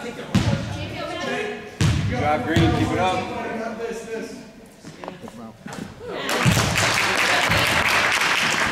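A basketball bouncing on a hardwood gym floor a few times, sharp thuds among spectators' chatter. From about six seconds in the crowd's voices swell into loud cheering.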